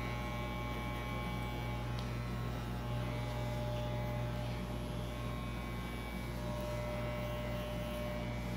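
Electric hair clippers with a low comb guard running with a steady hum as they are passed over short hair at the side of the head.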